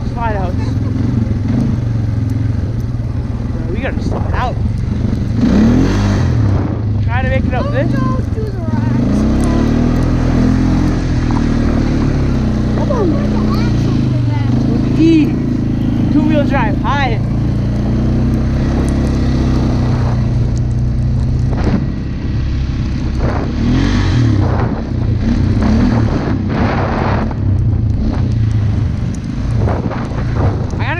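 ATV (four-wheeler) engine running under load while riding snowy trails, its pitch rising and falling as the throttle changes.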